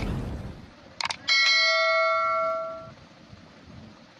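Sound effects of a subscribe-button animation: the tail of a boom fading out, a quick double click about a second in, then a bright bell ding that rings for about a second and a half and fades away.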